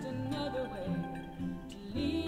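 Old-time string band music: a strummed acoustic guitar and a cello, with a woman singing the melody.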